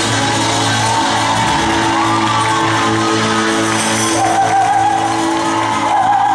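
Live pop band music: acoustic and electric guitars with drums, and a woman singing the melody.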